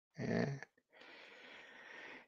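A person's brief, breathy vocal sound, about half a second long near the start, followed by faint steady hiss.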